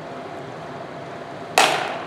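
A single loud, sharp strike about one and a half seconds in, fading quickly: a weapon landing in a sparring bout.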